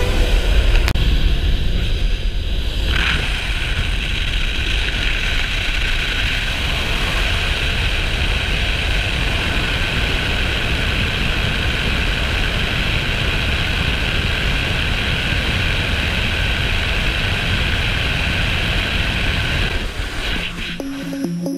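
Steady rush of wind and the engine and propeller of a small single-engine plane, heard through the open jump door, with the wind blowing on the microphone.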